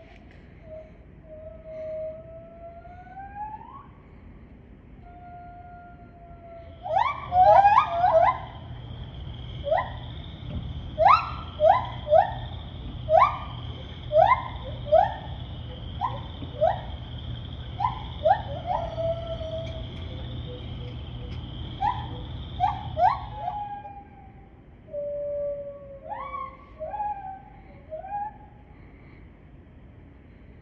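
White-handed gibbons singing: slow rising hoots, then a long run of quick, loud upward-sweeping whoops about once a second, then a few more rising hoots near the end. A steady high hum runs beneath the long run of whoops.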